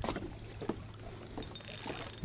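Water lapping around a small boat hull with light wind on the microphone, and a couple of faint clicks near the start and about two-thirds of a second in.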